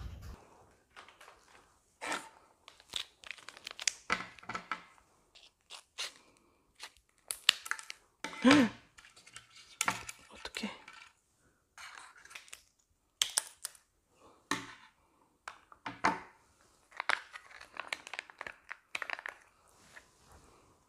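Plastic syrup packets being torn open, squeezed and crinkled by hand, with small knocks of paper cups and wooden skewers on a table: irregular rustles, crackles and clicks.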